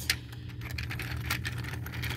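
A few faint clicks of plastic toy vehicles being handled, over a steady low hum.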